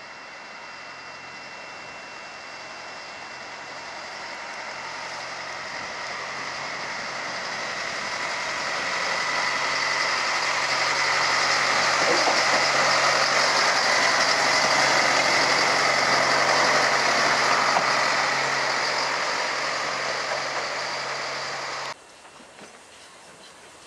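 Small narrow-gauge diesel locomotive running along the track, its engine note steady while the sound grows louder as it comes closer, loudest through the second half, then easing slightly near the end.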